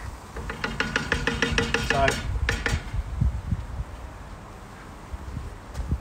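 Wooden spoon stirring and scraping thick tomato sauce in a cast iron skillet: a rapid rasping run of strokes about half a second in, followed by a few sharp knocks.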